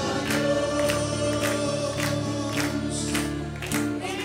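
Congregation singing a gospel worship song together over instrumental backing, with hand-clapping in time to the beat.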